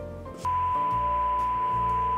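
Steady high-pitched test-tone beep over static hiss, the broadcast 'technical difficulties' signal that goes with colour bars, cutting in about half a second in over background music.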